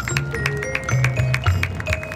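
Marching band playing: low bass notes change every half second or so, under bell-like mallet-percussion tones and quick drum strokes.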